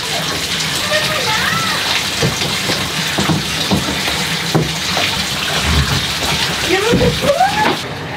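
Water running and splashing steadily in a bathtub as a plastic baby bath is washed in it with a brush.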